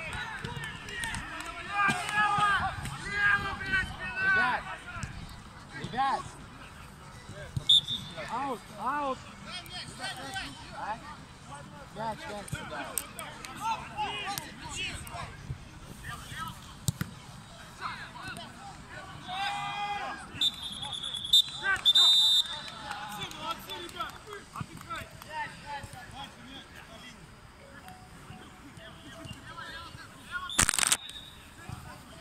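Football players shouting and calling to each other on the pitch, with occasional knocks of the ball being kicked. A referee's whistle sounds briefly about eight seconds in and again for about two seconds two-thirds of the way through.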